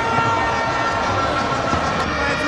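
Steady stadium crowd noise from the match broadcast, with a faint held tone running through it.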